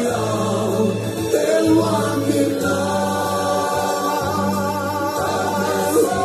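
Mixed choir of men's and women's voices singing a Malagasy gospel song over a steady low accompaniment.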